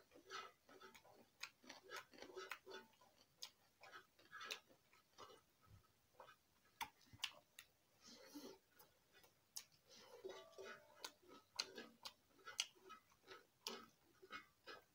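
Faint close-up eating by hand: irregular sharp smacks and clicks of chewing, a couple or so a second, with soft squishing as fingers mix and scoop rice on a steel plate.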